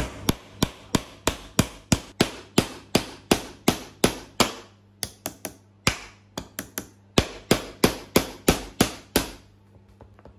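Steel claw hammer striking a screw into a pine board in a steady run of sharp blows, about three a second, with a short break about halfway and stopping shortly before the end.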